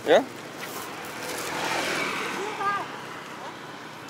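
A road vehicle passing close by, its running noise swelling for a second or two and then fading.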